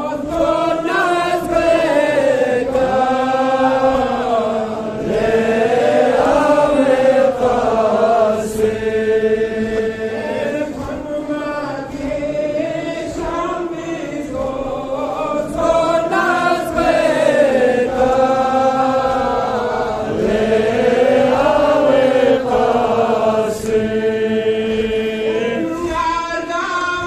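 A man chanting a Balti noha, a Muharram lament, into a microphone, in long melodic phrases of a few seconds each with held notes that bend up and down.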